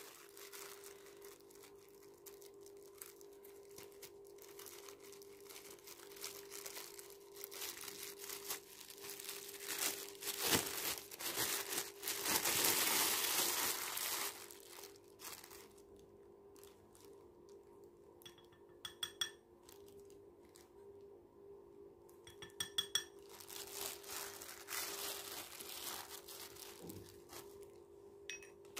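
A plastic bag crinkling and rustling as cocoa powder is scooped out of it, loudest midway through. Later come two short runs of light clicks, like a spoon tapping a ceramic bowl, over a faint steady hum.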